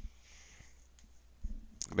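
A single sharp click, followed by low room noise with a faint hiss and a couple of soft low knocks. A man's voice begins at the very end.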